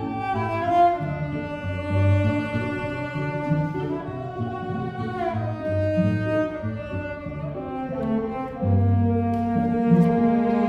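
Cellos playing a slow classical piece: a bowed melody of long, gliding notes over lower sustained notes.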